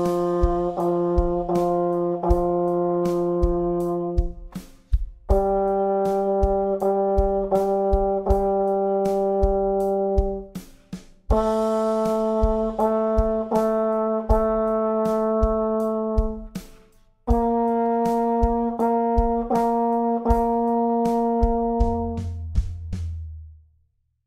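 Euphonium playing a slow warm-up exercise: four phrases, each a long note, two short repeated notes and a held note, each phrase a step higher than the last, over a steady drum-kit backing beat.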